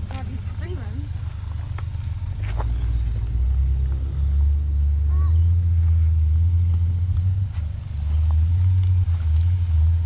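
Ford Ranger pickup crawling down a rocky trail, its engine running at low revs with a low rumble that grows louder about three seconds in as the truck draws close. A couple of sharp clicks sound from rocks under the tyres.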